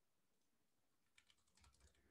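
Faint computer keyboard typing: a few quick keystrokes in the second half, otherwise near silence.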